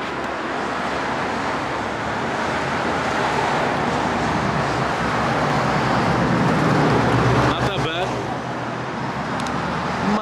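Road traffic noise, swelling to its loudest about seven seconds in as a vehicle passes, then easing off.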